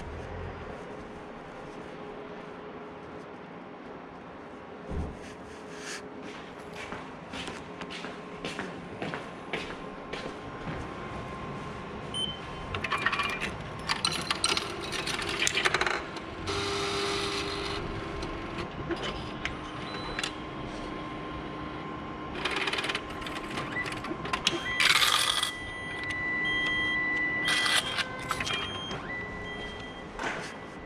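A station ticket vending machine in use: scattered clicks and knocks with several short electronic beeps, over a steady hum.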